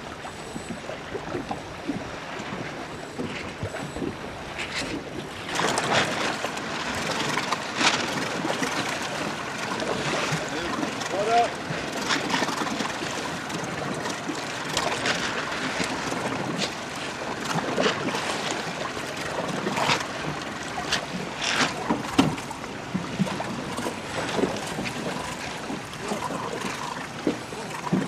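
Wind buffeting the microphone over choppy water, with repeated splashes and slaps of water around small sailing boats.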